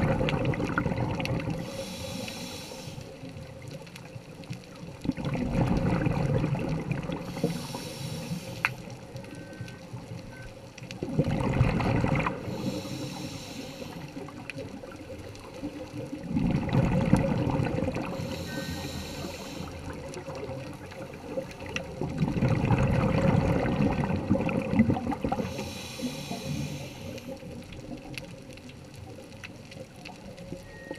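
Scuba diver breathing through a regulator underwater: about every six seconds a short hiss of inhaled air, then a longer low bubbling rumble of exhaled air, five breaths in all.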